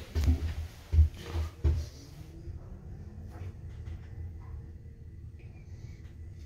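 Passenger lift car travelling down, a steady low hum with a faint thin whine. Several low thumps of handling noise come in the first two seconds.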